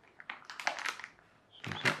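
Plastic packaging bags crinkling as they are handled: a quick run of rustles and crackles in the first second or so, then a short pause.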